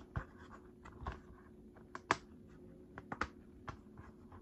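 Plastic DVD keepcase being handled and pried open by hand: scattered light clicks, taps and rubbing of fingers on the plastic.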